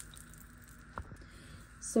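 Faint sizzling of butter in a cast-iron skillet, dying away, with a single sharp click about halfway through.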